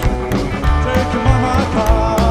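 Live rock and roll band playing, the drum kit keeping a steady beat with cymbal hits over bass and other pitched instruments.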